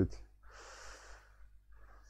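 A man drawing one audible breath in, about half a second long, in a pause between spoken phrases, with a fainter breath near the end.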